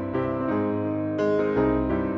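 Piano music with held chords over a low bass line, new chords coming in every half second or so.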